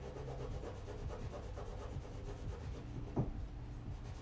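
A pastel stick rubbing and scratching across canvas as marks are drawn, over a steady low room hum, with a short knock about three seconds in.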